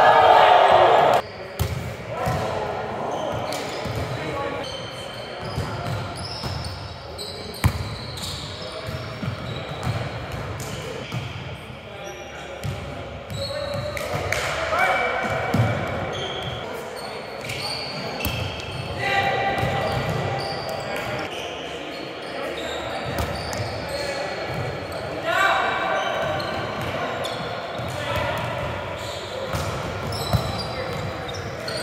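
Indoor volleyball play in a large gym hall: sharp hits of the ball and bounces on the hardwood floor, with players' shouted calls in bursts, all echoing in the hall.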